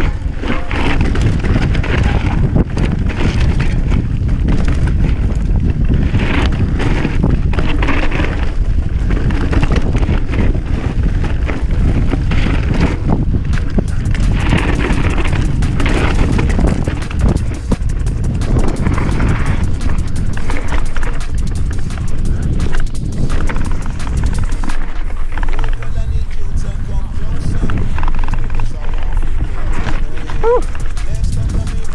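Mountain bike riding down a dry dirt trail: steady wind rumble on the camera microphone mixed with tyre noise and the bike rattling. A stretch of dense, fast clattering runs through the middle.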